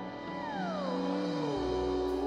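Live band instrumental intro: a held, gliding lead tone with a couple of harmonics slides down in pitch, and a deep bass note comes in near the end.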